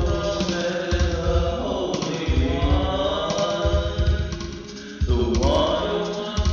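Chanting vocals over a music track with a deep bass beat pulsing about every second and a half. The music thins out briefly about four and a half seconds in, then comes back in full.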